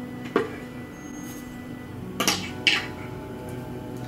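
Wands knocking against the metal cup hooks of a wooden wall display as they are hung in place: one knock about a third of a second in, then two more a little past two seconds in, over faint background music.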